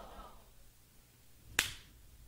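A single sharp snap about one and a half seconds in, over quiet room tone, with faint murmuring voices at the very start.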